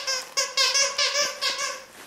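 Squeaker in a plush candy-cane dog toy being squeezed repeatedly, giving about six short squeaks in quick succession that stop shortly before the end.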